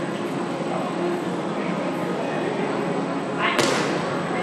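Steady hubbub of an indoor arena with faint, indistinct voices, broken about three and a half seconds in by a single sharp thud.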